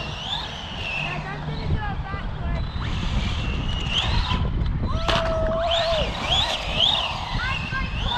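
Brushless electric motor of an Arrma Kraton 4S RC car whining, its pitch rising and falling again and again as the throttle is worked, over a steady low rumble of wind on the microphone.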